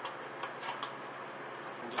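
A few light clicks and taps as a cut-down plastic drink bottle is handled, over a steady low hum.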